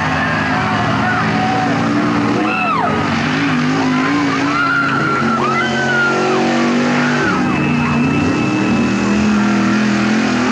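Big-block V8 engine of a 4x4 dirt-racing truck running hard, its pitch wavering up and down, with voices over it.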